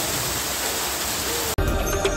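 Heavy rain of a hailstorm falling on a puddle, a steady hiss of splashing drops. About a second and a half in it cuts off abruptly and electronic intro music begins.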